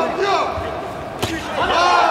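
Voices shouting from around a boxing ring in a large hall, with one sharp smack from the ring a little over a second in.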